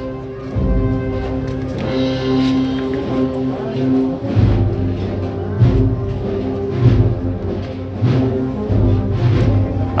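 A procession band playing a march: held, sustained chords with a deep drum beating about once a second in the second half.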